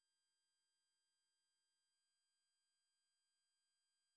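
Near silence: the soundtrack has ended, leaving only an extremely faint steady electronic hum.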